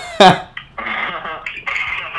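A man's short, loud laugh near the start, then about a second of muffled, narrow-sounding voices and laughter over a phone call.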